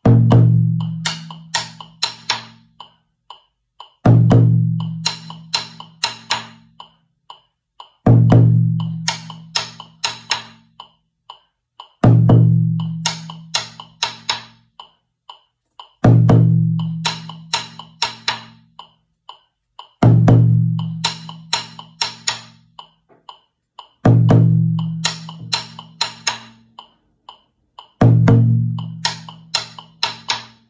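Djun djun bass drum played with two sticks in a phrase that repeats every four seconds: one loud, low, ringing stroke followed by a quick run of sharp, short strokes. A metronome clicks steadily underneath, about twice a second.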